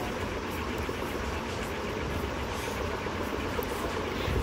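Steady background noise with a low rumble underneath and no distinct events.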